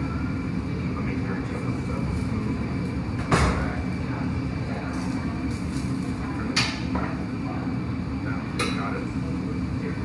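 Glassblowing studio furnace and fan running with a steady low roar as a steel blowpipe is rolled on the bench. Three sharp metallic knocks come from the tools and pipe against the bench: a loud one about a third of the way in, then one at about two-thirds and one near the end.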